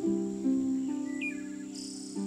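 Gentle harp music, a new plucked note ringing out about every half second, with a bird chirp a little after a second in and a brief high trill near the end.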